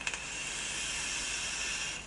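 E-cigarette dripping atomiser firing during a draw: a steady hiss of e-liquid vaporising on the hot coil, lasting about two seconds.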